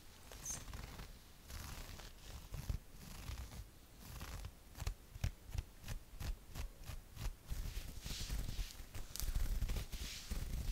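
Long fingernails scratching a mesh fishnet T-shirt, first in a run of short, quick scratches at about three a second, then a longer rubbing stroke near the end. Low soft thuds run underneath.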